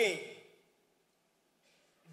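A man's voice drawing out the end of a spoken word with a falling pitch, then about a second of near silence and a faint breath just before he speaks again.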